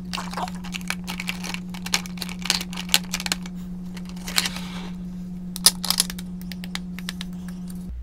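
Plastic lip gloss tubes clicking and clattering against each other and the sides of a plastic storage bin as a hand sorts through them, in irregular sharp clicks. A steady low hum runs underneath.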